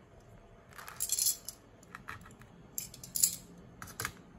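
Handling noise: two short bursts of crackling and rustling, about a second in and about three seconds in, as a split bread roll is picked up off a metal baking tray, with a sharp click near the end.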